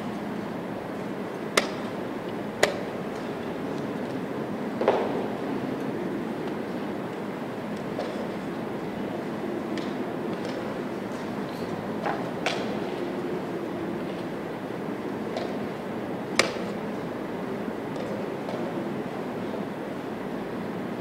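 Steady murmur of a busy playing hall, broken by about six sharp clicks and knocks at irregular spacing: chess pieces set down on a wooden board and chess clock buttons pressed as moves are made.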